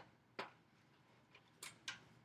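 A spatula knocking against the pot as it chops up stewed whole tomatoes in the chili: about five short, light knocks over two seconds, the loudest two near the start.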